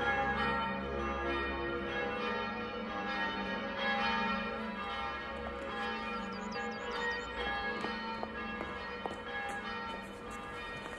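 Church bells pealing, many bells ringing together with their tones overlapping and hanging on.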